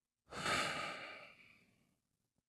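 A man's long sigh or exhale close into a handheld microphone, coming in sharply and fading out over about a second and a half.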